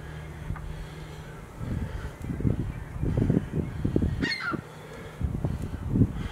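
A man breathing hard in quick, forceful puffs and grunts while doing squats holding a heavy sand-filled bucket. The breaths are loudest from about a second and a half in to about four and a half seconds in, then pick up again near the end.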